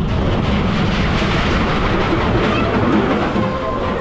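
Steel Eel roller coaster train rolling and rattling steadily along its steel track on the final brake run at the end of the ride.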